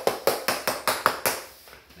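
Claw hammer giving light, rapid taps on a luxury vinyl plank, about five a second, to seat the plank tight in its seam; the tapping stops about a second and a half in.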